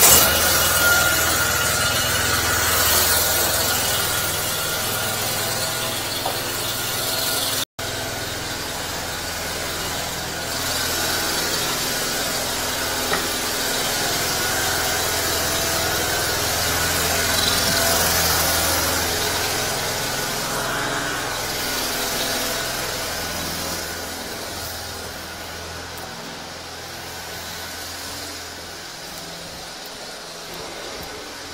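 Engine of a truck-mounted high-pressure sewer jetter running steadily just after starting: a low hum under a broad mechanical hiss. It fades over the last few seconds.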